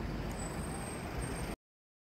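Street traffic: the steady low rumble of a motor vehicle running nearby, cut off abruptly to dead silence about a second and a half in.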